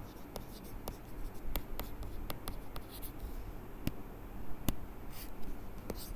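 Stylus writing on a tablet: irregular light taps and scratches of the pen tip on the surface as a word is handwritten.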